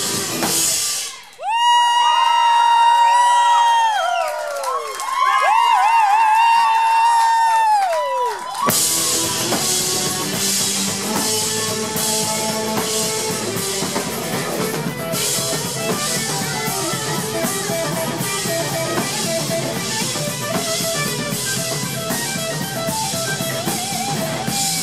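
Live rock band playing. About a second in the band cuts out and a lone electric guitar plays high, sustained notes with bends for about seven seconds. Then the full band with drums comes back in and plays on.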